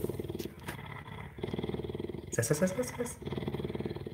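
A large cat purring close by, in runs of fast, even pulses broken by short pauses. A brief call cuts in about two and a half seconds in.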